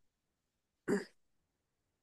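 A person clearing their throat once, briefly, about a second in; otherwise quiet.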